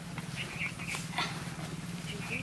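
A few short, high-pitched animal cries over a steady low hum.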